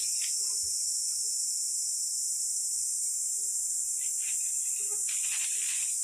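Steady, high-pitched drone of an insect chorus in the trees, even in level throughout.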